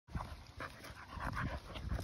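Two dogs play-wrestling, with short, uneven bursts of panting and mouthing noises several times a second.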